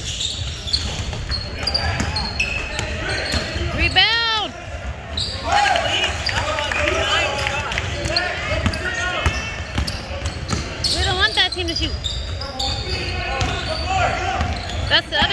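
Basketball sneakers squeaking on a hardwood gym floor during play, in many short squeals with one long, loud squeak about four seconds in, along with the thuds of a basketball bouncing and players' voices echoing around the gym.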